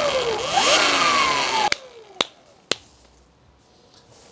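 Electric dirt bike's mid-drive motor and chain spinning the lifted rear wheel: a whine that dips, climbs and falls again with the throttle, just after encoder calibration. It cuts off about two seconds in, followed by three sharp clicks about half a second apart.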